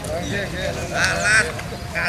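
People's voices on the bank, with a loud, high, wavering vocal cry about a second in that has a bleat-like quality.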